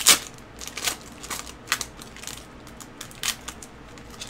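Foil trading-card pack wrapper being torn open and crinkled by gloved hands: one sharp crackle right at the start, then a scatter of short, softer crinkles and clicks.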